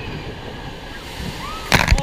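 Log flume water rushing in the channel, then, near the end, a sudden loud splash as a stream of water sprays straight up over the riders and hits the camera.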